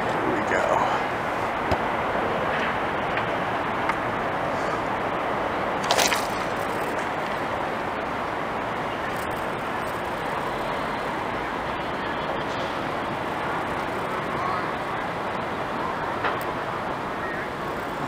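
Steady outdoor city ambience: a constant wash of traffic noise with voices in the background, and a single short knock about six seconds in.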